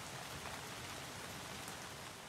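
Faint, steady hiss-like background noise with no pitch or rhythm.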